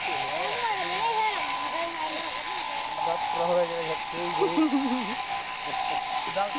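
Electric sheep-shearing clippers running with a steady whine as they cut a sheep's fleece, with people talking over them.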